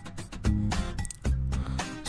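Background music playing.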